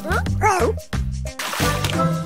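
Background music under a cartoon puppy's short yips and whimpers, several quick rising-and-falling calls in the first second.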